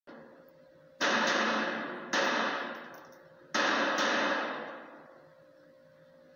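Four gunshots reverberating in an indoor shooting range, the last two close together, each followed by a long echoing decay. Film sound heard through a TV speaker.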